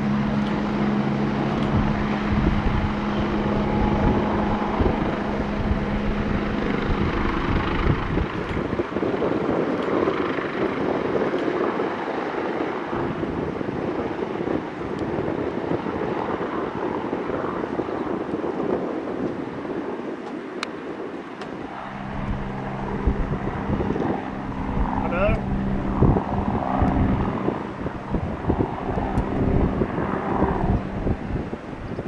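A steady low engine hum with wind rushing on the microphone; the hum drops out for the middle part and returns about three quarters of the way through.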